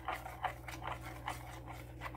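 Melt-and-pour soap base being stirred in its container: soft, irregular scraping ticks of the utensil, about three a second, as the cooling base is kept moving so it doesn't set up.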